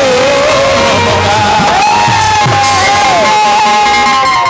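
Live Bhojpuri dugola music through a PA system: a male singer holds long, gliding notes over instrumental accompaniment.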